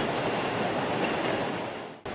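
Warehouse roller conveyor and sorting machinery running: a steady mechanical noise that fades out near the end.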